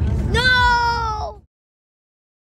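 A single high, drawn-out meow-like vocal call lasting about a second, over the low rumble of a car on the road. The sound then cuts off abruptly to dead silence.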